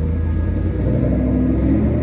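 A motor vehicle's engine running steadily close by in the street, a low hum whose pitch rises slightly near the end.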